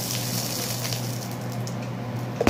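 Dry rice poured from a plastic cup into another plastic cup: a steady hissing trickle of grains with a few small ticks, thinning out in the second half.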